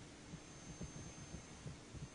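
Quiet room tone: a faint steady hum with several soft low thumps.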